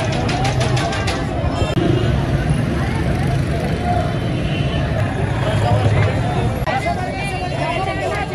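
Crowd hubbub: many people talking at once, over a steady low rumble of street traffic. A quick run of clicks comes in about the first second.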